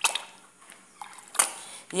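Cream glugging and splashing as it is poured from a carton into a bowl of milky liquid, with two brief sharp splashes about a second and a half apart.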